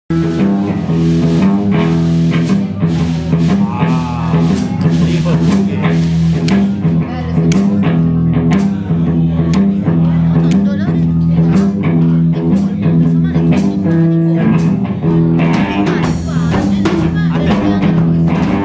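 Live blues band playing: electric guitar, electric bass and a Tama drum kit, with a walking bass line and regular drum and cymbal strikes.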